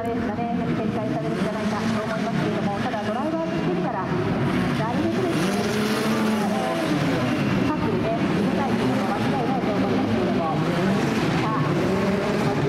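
Several Formula Regional single-seater race car engines running together, their pitches rising and falling as the cars rev and go by.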